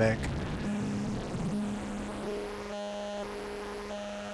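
Sawtooth wave through a 12-stage JFET phaser with the resonance cranked near the fundamental: a buzzy, unsettled, chaotic tone for the first second and a half. It then settles into a steady buzzing tone with a fixed pitch.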